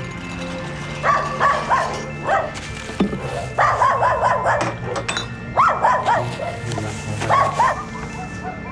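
A dog barking in several quick runs of barks, over background music with steady low notes.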